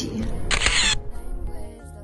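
Camera shutter sound effect, one short burst about half a second in, over background music.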